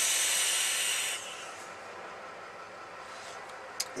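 A long draw on a vape atomizer fitted to a dual-18650 box mod: a steady airy hiss of air pulled through the atomizer, which stops about a second in, followed by a quieter breathy exhale of vapour.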